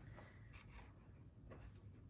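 Very faint rustling of thick cold-press sketchbook paper as the pages are leafed through by hand, a few soft page sounds.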